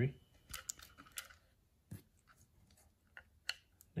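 Light handling sounds of small plastic connectors and wires: a few faint clicks and rustles as a red T-style battery plug is pushed together by hand.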